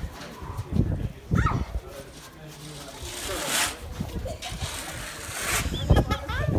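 Scattered voices and laughter, with two short hissing scrapes in the middle.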